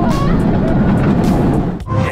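Background music over the ride noise of an inverted roller coaster in motion, a steady loud rush and rumble. It cuts off abruptly near the end.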